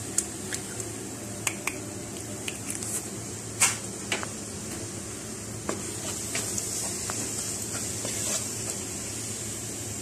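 Eggs cracked with a knife over a hot non-stick pan, with sharp taps and clicks in the first few seconds, the loudest about three and a half seconds in. The eggs then sizzle as a spatula stirs and scrambles them into frying cauliflower; the sizzle swells from about six seconds in.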